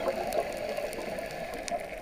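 Underwater sound on a reef dive: a steady, muffled water noise with scattered faint clicks and crackles.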